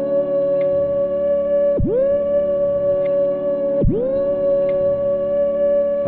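Ambient electronic music from a Norns shield running the reels looper: a sustained looped tone with many overtones that twice dives sharply in pitch and swoops back up, about two seconds apart, with faint ticks about every two seconds.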